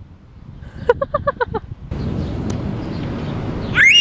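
A young girl's quick giggle, a short run of even, high-pitched 'ha' sounds. It is followed by a steady outdoor background noise, with a high rising-and-falling squeal near the end.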